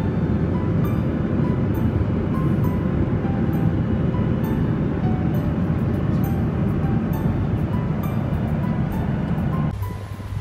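Airliner cabin noise in flight: a loud, steady low roar of engines and rushing air, with background music carrying a regular light beat over it. It cuts off near the end.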